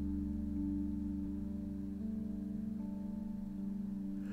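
Soft instrumental background music: a few held notes that change every second or two.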